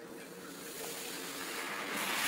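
Handling noise of a cardboard toy box: a hiss of rubbing and sliding that grows steadily louder.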